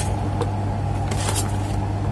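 A steady low hum, with a couple of faint light clicks about half a second and a second and a half in.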